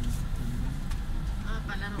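Car cabin: the low rumble of the car's engine and road noise as it creeps forward in a traffic queue, with people talking inside the car in the second half.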